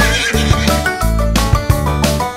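Instrumental nursery-rhyme music between verses, with a cartoon horse whinny sound effect over it near the start.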